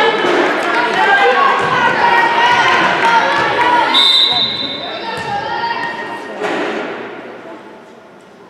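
Players and spectators calling out in a reverberant gym, then a referee's whistle blows one steady blast about four seconds in, signalling the serve. A single thud follows about two seconds later, and the hall then quietens.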